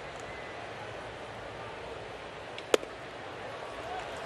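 Steady ballpark crowd noise, with one sharp pop nearly three seconds in: a 94 mph sinker smacking into the catcher's mitt, taken for a ball.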